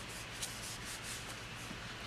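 Fingertips rubbing and sliding a paper sticker over a journal page as it is lined up, a faint, soft brushing of paper on paper.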